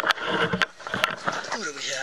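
Knocks, clicks and scraping from a camera mounted on a paintball gun as the gun is moved, then a man's voice in the second half.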